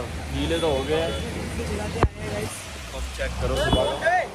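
People's voices talking over a steady low street rumble, with a sharp click about two seconds in and a smaller one shortly before the end.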